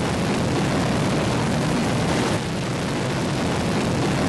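Soyuz rocket's engines at lift-off: a loud, steady rumble of noise.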